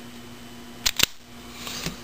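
Two sharp clicks in quick succession about a second in from a spring-loaded wire stripper, followed by a faint rustle and a softer click near the end.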